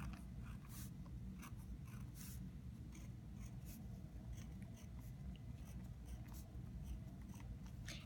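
Faint scratching of a pen on notebook paper, in many short, irregular strokes as small circles and tally marks are drawn.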